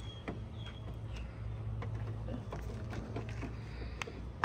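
Light clicks and rattles of a BMW 535i's hood safety catch as a hand works it under the front edge of the hood, over a steady low hum.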